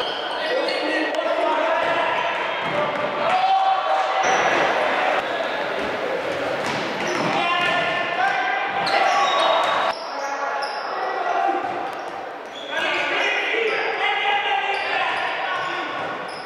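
Futsal game in an echoing sports hall: players and onlookers shouting, the ball being kicked and hitting the floor, and sports shoes making short, high squeaks on the court.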